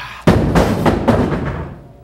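A heavy hard plastic protective case (a Pelican case) crashes down with a loud boom, then clatters and rattles for about a second as it settles.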